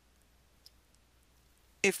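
A few faint, isolated clicks over near silence, then a voice starts speaking near the end.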